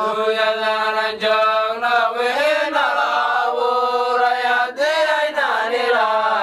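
A man chanting a melodic Islamic religious chant in Arabic, holding long drawn-out notes that slide up and down in pitch.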